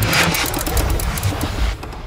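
A rushing whoosh sound effect with a low rumble beneath it, marking a cartoon's dissolve into a scene from the past; it eases off near the end.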